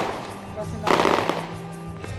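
A burst of rapid crackling pops about a second in, over background music.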